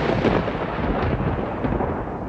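A thunder rumble sound effect: a dense, steady rolling noise with no tone to it, easing off a little near the end.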